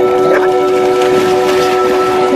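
Background music of long, steady held chords.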